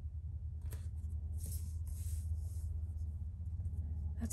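Paper being handled: a light tap, then soft rustling and sliding of planner pages and sticker sheets, over a steady low hum.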